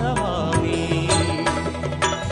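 Devotional music: the instrumental backing of a Hanuman hymn in a gap between chanted lines, with a steady percussion beat.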